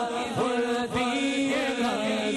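A male lead voice and a group of men's voices singing a devotional chant together into microphones. The melody glides up and down over a held low note.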